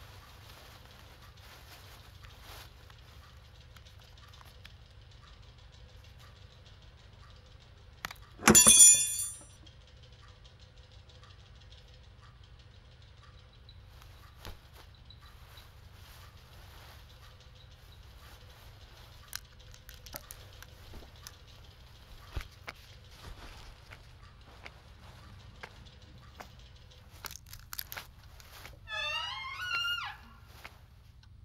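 Horror-film sound design: a low steady drone with faint scattered clicks and ticks. About eight seconds in, a sudden loud, shrill sting lasts about a second. Near the end, a wavering sound glides up and down in quick short sweeps.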